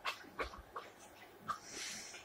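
Quiet handling of a plush Care Bear: a few small clicks and rustles, then a soft breathy sniff near the end.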